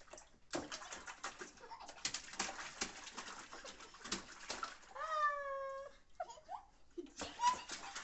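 Bath water splashing and slopping in a plastic tub as hands scoop it over a toddler. About five seconds in, one high, drawn-out cry about a second long stands out as the loudest sound.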